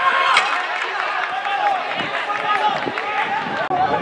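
Voices shouting and talking throughout, with a sharp knock about half a second in.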